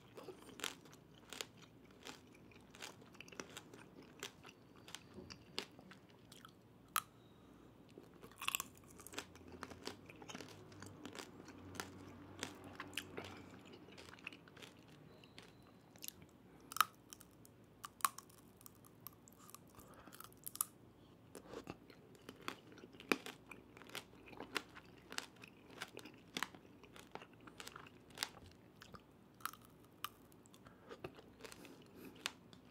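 Close-miked chewing of candied hawthorns (tanghulu): the hard sugar glaze cracks between the teeth in sharp, irregular crunches, with softer chewing in between.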